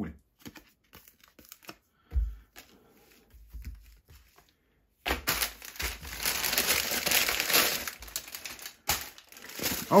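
Foil-plastic packaging bag being torn open and crinkled as it is handled, starting about halfway through. Before that there are only a few light taps and a dull knock.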